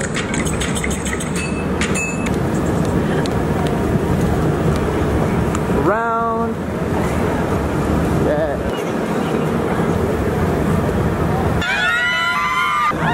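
Busy city street noise: a steady wash of traffic and crowd. A short pitched tone cuts through about halfway, and voices come up near the end.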